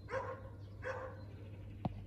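A tennis ball struck by a small child's racket: one sharp pop near the end. Before it come two faint, short, pitched cries.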